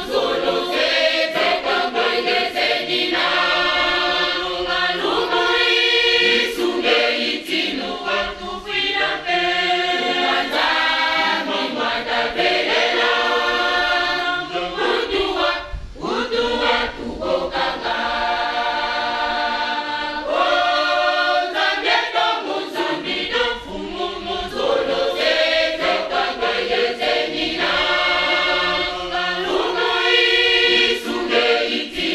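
A women's church choir singing together in harmony, led by a woman standing in front of them. The voices run in long sustained phrases with short breaks between them.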